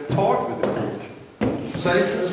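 Indistinct voices talking in a hall, broken by a single sharp knock about one and a half seconds in.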